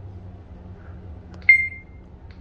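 Schindler 3300 traction elevator car running down with a steady low hum, and a single short electronic ding about one and a half seconds in as the car passes a floor.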